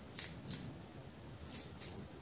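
Fingertips and long fingernails rubbing through short hair on the scalp, making four short, crisp rustles in two pairs about a second apart.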